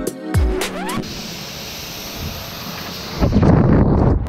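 Music with a beat for about the first second, then the steady hiss of a car-wash high-pressure spray wand washing down an aluminium travel trailer. The spray noise gets louder and heavier in the last second.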